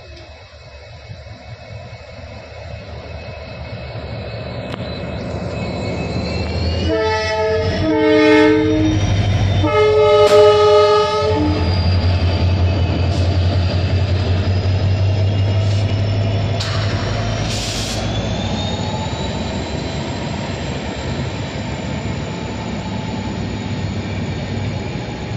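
Train running on the rails, getting louder over the first several seconds and then holding steady, with its horn sounding a few blasts about a third of the way through: two short toots and then a longer one.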